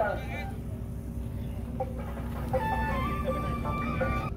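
A long, held pitched call begins about two and a half seconds in and carries on to the end, over a steady low hum.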